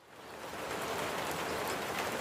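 Steady rain, a recorded sound effect, fading in over the first half second and then holding an even hiss.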